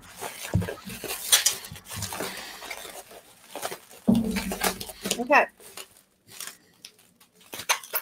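Plastic bubble wrap crinkling and crackling in short bursts as it is rolled tightly around an item and pressed flat by hand.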